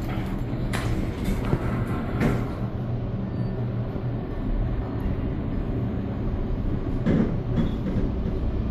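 Elevator car travelling down one floor, giving a steady low hum and rumble, with a few short knocks in the first couple of seconds and another near the end.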